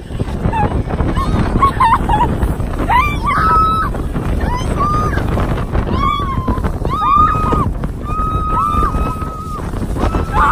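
Snow tubes sliding fast down a snowy slope: a steady rumble of wind on the microphone and the tube scraping over snow. Over it the riders let out several long, high squeals and screams.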